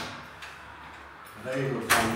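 A latch being worked by hand: a light click at the start and a louder, sharp click near the end, with a voice coming in about a second and a half in.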